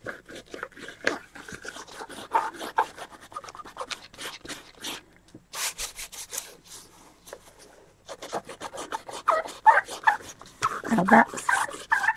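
Dried masking fluid being rubbed off a black-acrylic-painted colouring-book page, rapid scratchy rubbing strokes with a brief pause about five seconds in.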